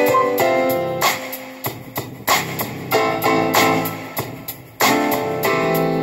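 Keyboard synthesizer playing piano-like chords. Each chord is struck sharply and left to ring and fade, about one every second or so, with a quicker run of notes about halfway through.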